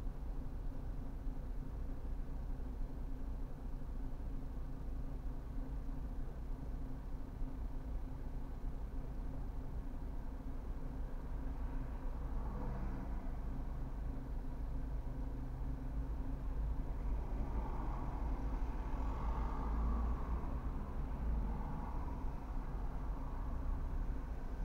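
A car engine idling, heard from inside the cabin as a steady low hum. In the second half, passing traffic on the wet road grows louder for a few seconds.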